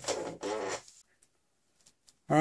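Wooden test boards, a pine board and a piece of particle board, being set down and slid against each other and across the scroll saw's metal table: a short scraping rub with a brief squeak, ending about a second in.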